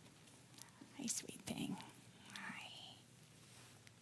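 Faint whispered voices at close range, with a short rising voice sound about two seconds in.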